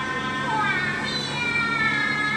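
Background music with high held tones that slide slowly downward.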